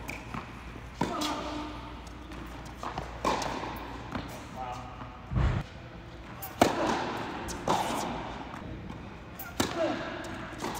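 Tennis balls struck by racquets and bouncing on an indoor hard court, a series of sharp hits that echo in the hall, the loudest about two-thirds of the way in as a serve is struck.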